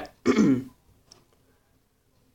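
A man clearing his throat once, a short rough sound that falls in pitch.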